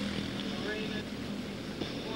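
Several quarter midget race cars with single-cylinder Honda 160 four-stroke engines running together on track, a steady drone of small engines.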